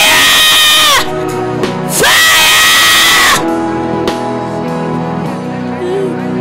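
A person screaming twice, each a long, high cry of about a second that drops in pitch as it breaks off, while being prayed over for deliverance. Background music with sustained chords plays underneath.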